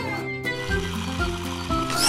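Background music: a light cartoon tune of held notes that step from one pitch to the next over a bass line.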